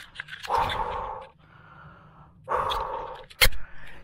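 A man breathing hard and panting, two long heavy breaths, out of breath from fighting and landing a big fish. A single sharp knock comes near the end and is the loudest sound.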